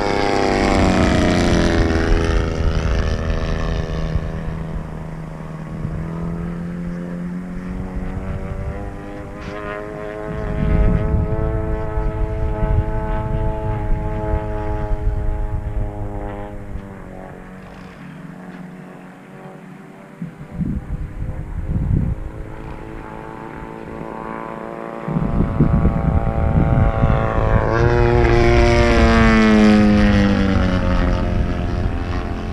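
Engine and propeller of a 116-inch Skywing NG RC aerobatic plane running in flight. Its pitch drops as the plane passes just after the start and again near the end, holds steady in between, and fades around the middle. Low rumbles come and go at times.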